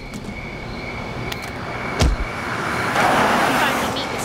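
Film sound design: a steady high tone runs under a single heavy thump about two seconds in, followed by a swelling rush of noise.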